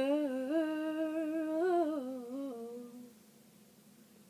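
A young woman humming a wordless melody unaccompanied, holding long notes that step up and down in pitch, then trailing off and fading out about three seconds in.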